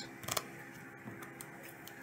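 Small packet of playing cards being cut by hand: a few sharp clicks and taps of the cards in the first half-second, then fainter ticks.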